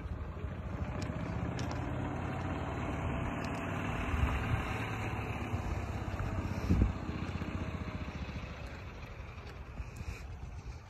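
A low motor-vehicle engine rumble that builds over the first seconds and eases off toward the end, with a brief low thump near seven seconds.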